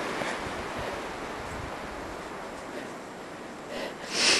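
Wind rushing through the forest: a steady noise that eases off slightly over a few seconds.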